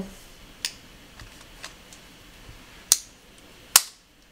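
Sharp clicks as a Eufy video doorbell is pressed onto its angled mounting wedge: a faint click about half a second in, then two loud snaps near the end as it seats under firm pressure.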